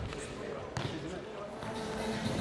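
A single sharp knock of a futsal ball being struck or bouncing, echoing in a sports hall, about a third of the way in, over people talking.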